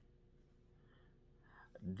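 Near silence: faint room tone with a low steady hum, then a man's voice starts speaking just before the end.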